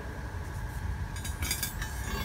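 Low steady workshop background hum, with a few faint light clicks in the second half as the steel channel is handled.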